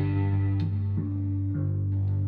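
Electric bass and electric guitar playing through effects pedals: a held low note rings steadily while a few plucked notes change above it.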